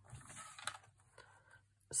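Faint rustling and light taps of card stock being slid and pressed into place on a paper trimmer's plastic bed, mostly in the first second.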